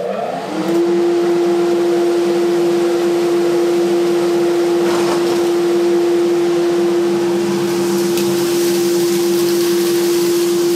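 2 hp (1.5 kW) single-stage dust collector, fitted with a new cartridge filter, starting up: its motor and impeller rise in pitch for under a second to a steady high hum, then run evenly with the rush of air through the hose.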